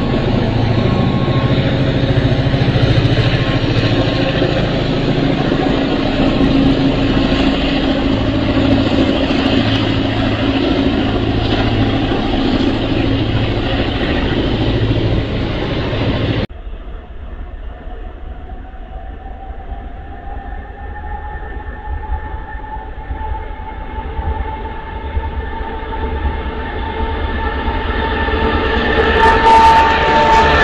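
Passenger train running past on the line, a loud steady rumble of wheels and engine. It cuts off abruptly about halfway to a quieter approaching train whose faint whine slowly rises in pitch and grows louder near the end.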